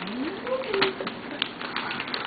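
Gift-bag tissue paper rustling and crinkling as hands rummage in it, in a run of short crackles. A short rising voice sounds in the first second.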